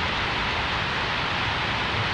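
A steady, even hiss of background noise, with no other sound standing out.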